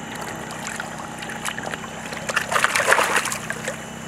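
River water splashing and sloshing as a hand grips a netted fish in the shallows. The splashing is loudest in a burst from about two and a half to three and a half seconds in.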